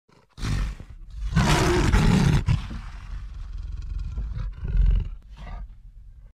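Roar sound effect of an intro sting: a first burst just after the start, the loudest stretch from about one and a half to two and a half seconds in, then a second swell near the end before it cuts off.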